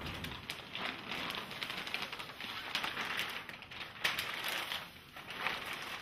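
Sterile pack wrapper being unfolded by hand on the back table: an irregular crinkling rustle with small crackles, a few louder ones about four and five and a half seconds in.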